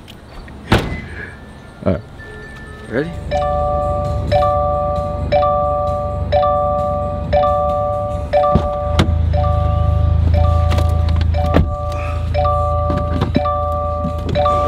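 Car door and trunk thunks, then a car's warning chime repeating about once a second, a steady two-note tone, while the engine runs low underneath.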